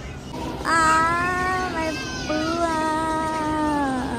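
A young child's voice making two long, drawn-out calls, each held steady and slowly falling in pitch, with a short break between them.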